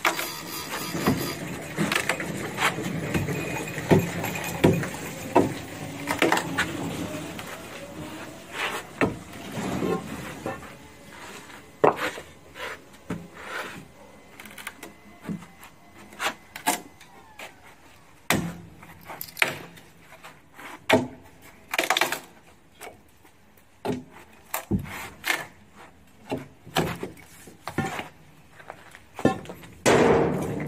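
A long steel bar knocking and scraping against a hollowed elm-root block. It strikes and levers at the wood in a run of irregular knocks, chipping out the cavity.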